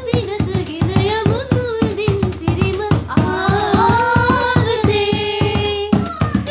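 Singing accompanied by a laced, double-headed hand drum beaten in a quick, steady rhythm of about four to five strokes a second; from about three seconds in the voice holds longer, steadier notes.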